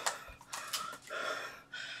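A woman panting, about four short, hard breaths in a row, out of breath from dancing.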